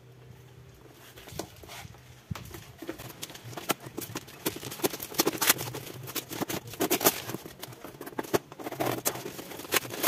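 A tightly sealed parcel being picked at and torn open by hand: irregular crackling, rustling and clicking of plastic wrap, tape and paper packaging, beginning about two seconds in.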